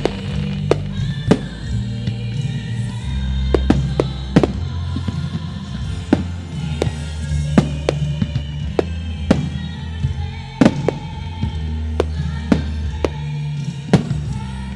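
Aerial firework shells bursting in a rapid, irregular run of sharp bangs, one or two a second, over music with singing playing on loudspeakers, the national anthem the display is fired to.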